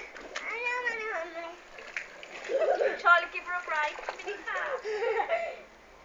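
A young child's high-pitched, wordless squeals and whines in three bouts, stopping shortly before the end.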